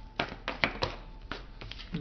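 Tarot cards being handled and pulled from the deck: a few short, sharp card snaps and taps, about five in the first second and a half.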